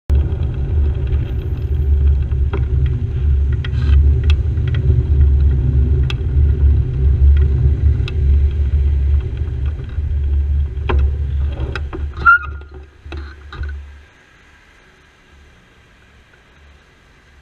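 Low wind and road rumble on a bicycle-mounted camera's microphone while riding in traffic, with scattered knocks. About twelve seconds in, a short high squeal is the loudest moment, and about two seconds later the rumble stops as the bicycle comes to a halt, leaving faint traffic.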